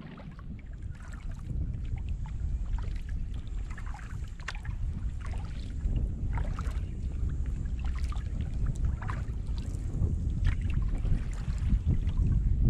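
Wind buffeting a microphone low on a kayak, with irregular splashes and drips from a paddle working the water.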